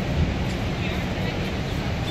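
Steady, low rumbling roar of the water going over the Horseshoe Falls at Niagara, with the voices of a crowd of onlookers mixed in.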